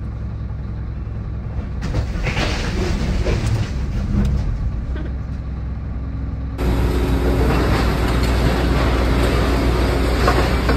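Vehicle engine running, heard from inside the cab as a steady low drone with rattles and knocks. About six and a half seconds in it turns abruptly louder and fuller.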